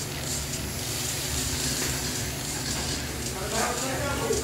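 Small electric radio-controlled race cars running laps on a smooth concrete track, giving a steady hiss of motors and tyres.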